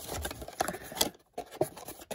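Paperboard flaps of a trading-card blaster box being pulled open by hand: light scraping and rustling of the cardboard with a few soft clicks, briefly stopping a little past a second in.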